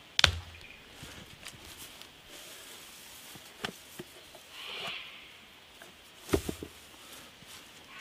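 Footsteps through grass and leaf litter, with a few sharp snaps and knocks, the loudest just after the start and another about six seconds in.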